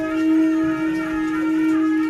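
Buddhist ritual wind instruments sounding one long held note at a steady pitch, with a second, higher tone held over it for about the first second.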